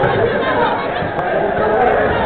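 Many young voices chattering at once, overlapping into a steady babble with no single clear speaker.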